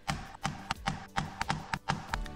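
About half a dozen short, sharp taps in quick succession: a metal leather punch being struck to cut slots and lacing holes in 7 oz veg-tan leather. Background music plays underneath.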